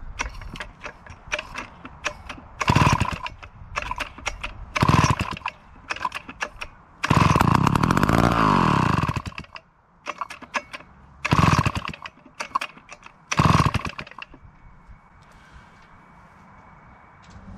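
Old David Bradley two-stroke chainsaw, long unused and fed a little poured-in fuel, being pull-started again and again: short pops and sputters on several pulls of the cord, and once it catches and runs for about two seconds, its pitch rising and falling, before it dies.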